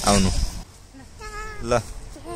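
A young child's short, high-pitched vocal calls: a voiced sound at the start, then after a brief quiet two small squeaky calls near the end.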